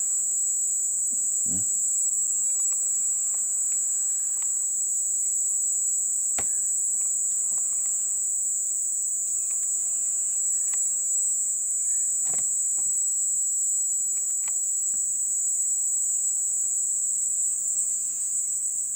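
Crickets trilling steadily at a high pitch in a continuous night chorus, with a couple of faint clicks in the middle.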